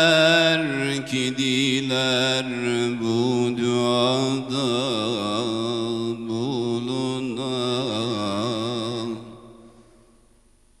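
A man's solo voice singing a Turkish religious hymn (ilahi) into a microphone, holding long notes and winding them with quick wavering ornaments. The phrase ends about nine seconds in and dies away.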